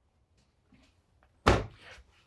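A kitchen cabinet door swung shut with a single sharp knock about one and a half seconds in, after a few faint small clicks.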